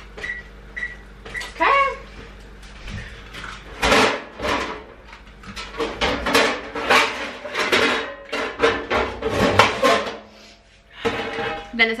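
A couple of short, high electronic keypad beeps at the start, then a run of knocks and clatter as metal baking pans are handled and pulled out.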